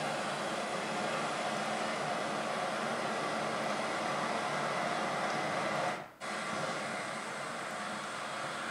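Cassini's Radio and Plasma Wave Science antenna data from inside Saturn's rings, turned into sound and played over a lecture hall's speakers: a steady hiss of plasma waves with a brief dropout about six seconds in. No pings of dust hitting the spacecraft are heard, the sign that this gap between the rings and Saturn held far less dust than the models predicted.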